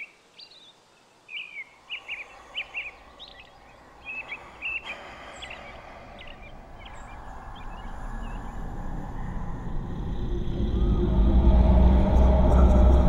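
Small birds chirping in a wood, then a deep rumbling drone that swells steadily louder over the second half and drowns out the birdsong.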